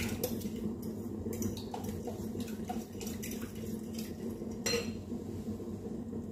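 Fork stirring and clinking against a glass bowl of beaten egg and grated parmesan being warmed over boiling water: a few light clinks in the first two seconds and a sharper one near five seconds, over a steady low background noise.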